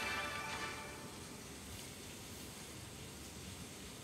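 Short electronic chime from the Instant Loto online game as its result screen appears, several tones ringing together and fading away within about the first second, followed by a faint steady background.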